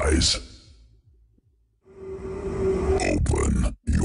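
Funfair ambience of crowd voices and music from the rides. It fades out to near silence shortly after the start, comes back about two seconds in with a steady held tone, and breaks off for a moment just before the end.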